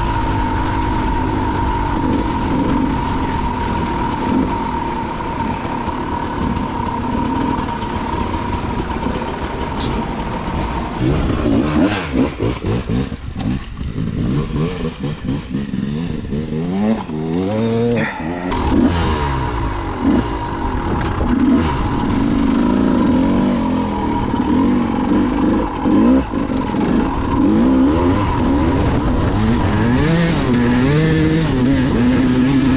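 2016 KTM EXC 200 two-stroke dirt bike engine heard from the bike itself while riding a rough trail. The revs rise and fall over and over as the throttle is worked and gears are changed.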